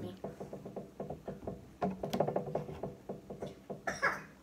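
A person biting into a folded slice of bread sandwich and chewing the mouthful close to the microphone, with a rapid run of short wet mouth clicks. The sandwich holds peanut butter, blue cheese, cheese and sour Skittles.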